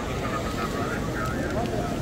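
Crowd hubbub: many voices murmuring, with faint, indistinct speech over a steady low rumble.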